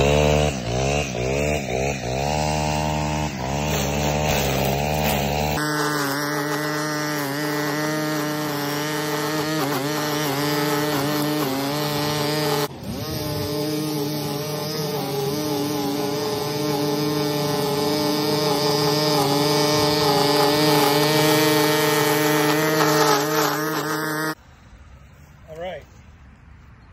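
Stihl string trimmer engine revving unevenly just after starting, then running steadily at high speed for about twenty seconds as its line cuts thick St. Augustine grass. It shuts off near the end.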